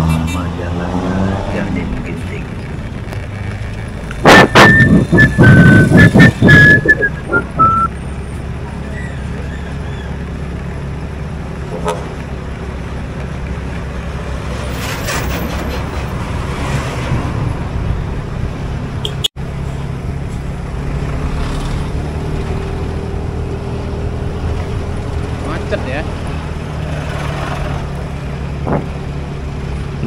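Motorcycle engine running under steady road and wind noise while riding. About four seconds in comes a loud rough burst lasting around three seconds, with a brief high whistling tone that steps down in pitch.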